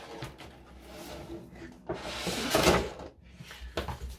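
Cardboard Funko Pop box being opened and its clear plastic inner tray slid out, with light rustling and a louder scraping rustle about halfway through, then a few small clicks.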